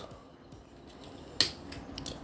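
A sharp plastic click about one and a half seconds in as the action figure's hinged shoulder compartment is snapped shut, followed by a couple of fainter clicks.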